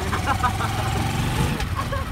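A motor vehicle engine running close by, a low rumble with a steady hum that fades about one and a half seconds in.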